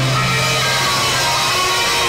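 A live rock band playing, led by a hollow-body electric guitar, with a low note held through the first part.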